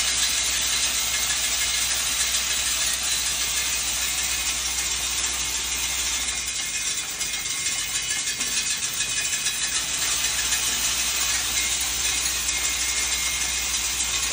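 Automatic nail sorting machine running, sorting about 400 nails a minute: its vibratory bowl feeder and rotating inspection disc make a steady, high-pitched mechanical rattle and hiss. A low hum under it drops out for a couple of seconds in the middle, then returns.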